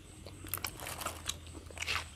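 Close-up crunching and crackling of food being bitten and handled at the table: a scattering of sharp little crackles from about half a second in, thickest near the end.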